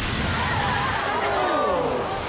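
Water gushing in a steady, loud rush from a burst tanker truck's tank, with a crowd's voices shouting over it.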